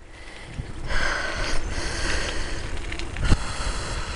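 Riding noise from a bicycle moving along a path: wind rumbling on the microphone with tyre and frame noise, growing louder about a second in, and one sharp knock a little over three seconds in.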